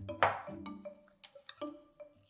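Metal fork clinking and scraping against a glass mixing bowl while a stiff dough is stirred, with a few sharp clinks, the loudest just after the start and about a second and a half in. Soft background music runs underneath.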